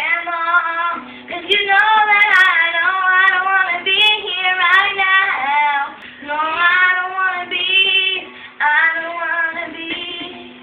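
A young girl singing a pop song into a microphone, in phrases of a second or two with short breaths between them.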